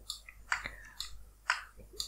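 A few short, soft clicks, about four spread over two seconds, close to the microphone.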